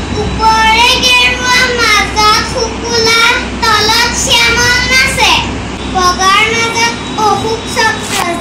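A young girl singing in a high child's voice, phrase after phrase, with no instrument behind her.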